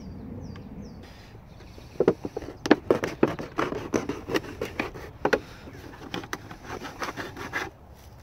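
Knife blade cutting through the thin plastic of a milk carton: an irregular run of scraping clicks and crackles that starts about two seconds in and stops shortly before the end.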